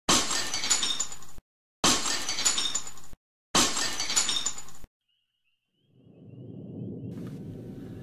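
Glass shattering, three nearly identical crashes about a second and a half apart, each with a sharp start and a short ringing tail, as a repeated sound effect. After a second of silence, a low rumble swells in near the end.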